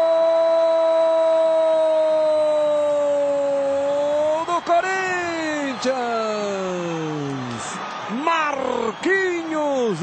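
A football commentator's long drawn-out goal cry, one high note held steady for about four seconds and then sliding down. It is followed by several shorter excited shouts, each falling in pitch.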